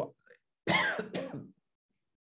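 A man clearing his throat, in two quick rough pushes starting about two-thirds of a second in.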